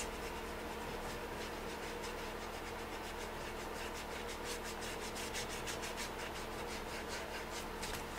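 Medium crescent stencil brush dry-rubbing paint onto the painted tray surface in quick repeated strokes. The strokes are clearest in the second half, over a steady low hum.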